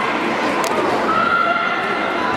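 Crowd in a sports hall shouting and cheering during a karate bout, with one long drawn-out shout about a second in.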